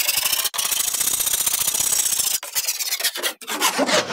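Hand file rasping along the edge of a wooden board, shaping the curve of a pizza peel blank: fast back-and-forth strokes with brief pauses a little over halfway and again near the end.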